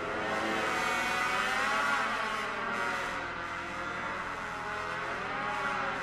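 Contemporary orchestral music for trombone and orchestra: a dense, sustained texture with pitches sliding up and down in glissandi.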